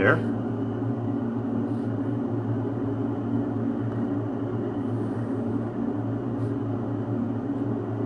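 A steady low hum of room background noise, with only a few faint ticks as a pen draws a line along a scale ruler on paper.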